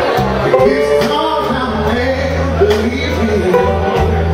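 A male vocalist sings over a live blues-rock band, with a steady low bass line under the voice and repeated drum and cymbal hits.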